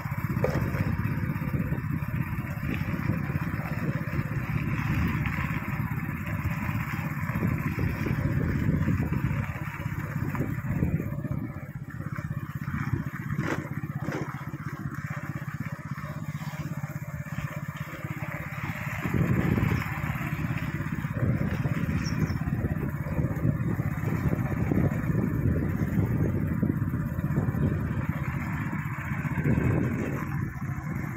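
Motorcycle engine running steadily at low speed, mixed with wind rumble on the microphone.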